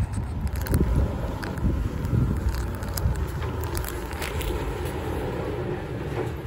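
Low rumble of wind buffeting a handheld camera's microphone while walking across a parking lot, with scattered light clicks on top.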